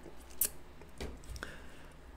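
Three short, faint clicks; the loudest comes about half a second in.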